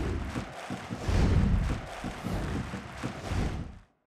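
Bass-heavy outro sound effect for an end card: deep booming swells about once a second under a noisy rush, fading out just before the end.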